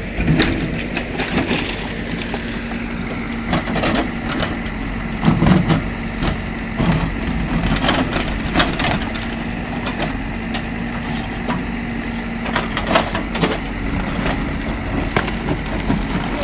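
JCB 3DX backhoe loader's diesel engine running steadily while its backhoe bucket digs into a layered rock face, with repeated irregular cracks and clatter of breaking rock.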